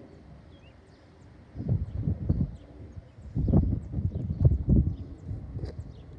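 Wind buffeting the microphone in irregular gusts starting about a second and a half in, with faint bird chirps above it.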